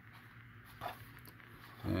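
Quiet pause in a man's talk, near room tone, with one brief soft sound a little under a second in. His speech starts again near the end.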